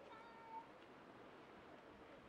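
A faint, short, high-pitched animal call, about half a second long, near the start, over a low steady hiss.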